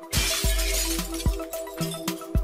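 Electronic intro music with a steady bass beat, opened by a glass-shattering sound effect in the first second.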